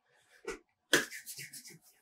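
A faint tick, then a sharp clap about a second in, followed by palms rubbing together in a pulsing rustle that fades.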